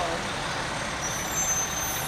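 Fire department aerial ladder truck rolling slowly past, its diesel engine running steadily under the street noise.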